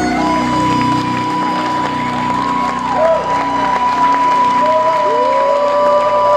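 Harmonica played into a vocal microphone, holding one long steady note over the band, while the audience cheers, whoops and applauds.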